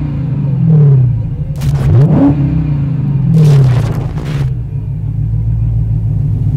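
A car engine running with a steady low rumble and revved several times. Each rev swells and falls back, the loudest about one, two and three and a half seconds in.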